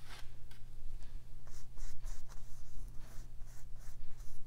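Paintbrush scrubbing paint onto a canvas bag in short repeated scratchy strokes, several a second.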